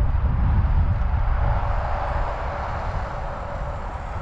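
Wind rumbling against the microphone over a steady mid-pitched hiss, slowly easing off.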